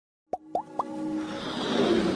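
Motion-graphics intro sound effects: three quick pops that rise in pitch, about a quarter second apart, followed by a whoosh that swells steadily louder.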